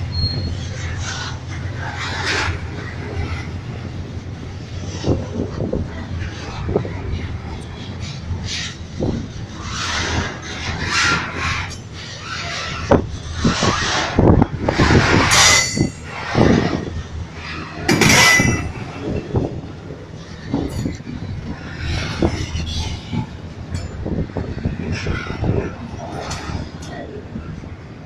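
Freight train flatcars rolling past close by: steel wheels rumbling and clattering on the rails, with a couple of brief high wheel squeals about halfway through.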